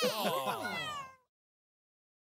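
Cartoon kitten meowing, with character voices overlapping, in several falling calls that die away just over a second in.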